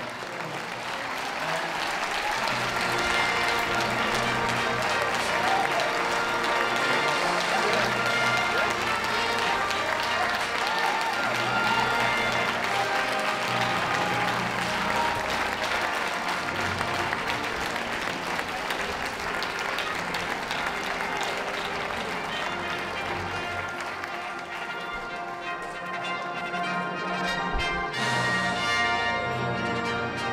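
Audience applause over orchestral background music. The applause dies away about 24 seconds in, leaving the music.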